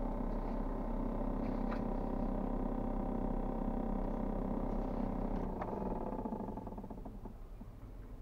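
Steady mechanical hum inside a parked car's cabin, with a couple of light clicks; the hum dies away about six seconds in.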